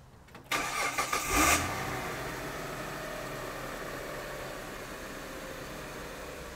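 A V6 car engine (3500 on the cover) being restarted off a 12-volt pack of four Headway 38120 LiFePO4 cells: the starter cranks for about a second, beginning half a second in, the engine catches and settles into a steady idle. It was shut off only seconds before.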